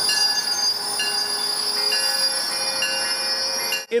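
Commuter rail train's steel wheels squealing on the rails: several steady high-pitched tones, with lower squeals coming and going irregularly. The sound cuts off abruptly just before the end.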